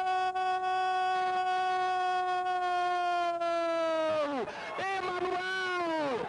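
A Portuguese-language football commentator's long drawn-out goal cry, "Gooool", held on one steady note for about four seconds before falling away. Shorter shouted calls follow it.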